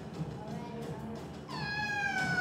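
Stage music, then about one and a half seconds in a loud, high, drawn-out wailing cry that slides slowly down in pitch.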